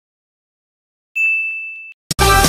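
Silence, then about a second in a single bright bell-like ding, a notification-chime sound effect, that rings steadily and fades a little before cutting off suddenly.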